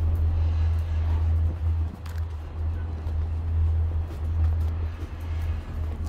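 Steady low rumble inside a moving Disney Skyliner gondola cabin as it rides along the cable, with a few faint clicks.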